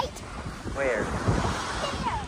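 Wind buffeting the microphone over surf washing on a beach, with a child's short voiced exclamation that slides up and down in pitch about a second in.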